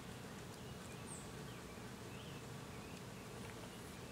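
Faint outdoor ambience with a flying insect buzzing steadily and a few faint, short high chirps.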